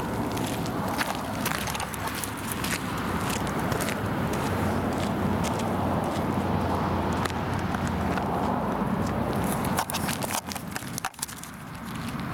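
Footsteps crunching on a gravel path, irregular sharp crunches over a steady rushing noise.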